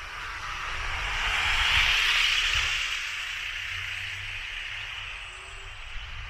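A vehicle passing close by on the street, its road noise swelling to a peak about two seconds in and then fading away.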